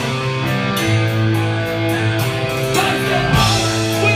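Live punk rock band playing loud, with distorted electric guitars holding chords over drums and cymbals.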